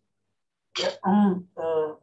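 A man clearing his throat in two voiced parts, starting about three-quarters of a second in, just before he speaks.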